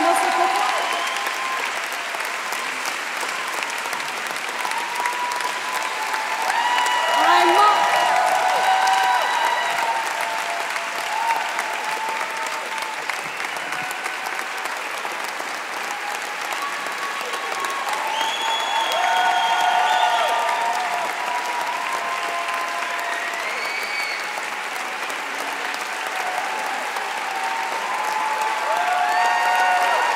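A large audience applauding steadily after a song, with voices calling out over the clapping; the applause swells a few times.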